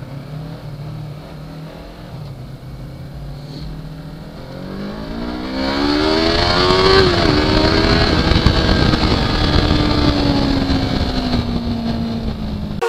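2018 Yamaha R3's 321 cc parallel-twin engine running at low revs, then from about four and a half seconds accelerating: the engine note climbs, dips briefly at a gear change near seven seconds, and settles into a steady, slowly falling note. Wind noise on the helmet-mounted microphone rises with speed and grows as loud as the engine.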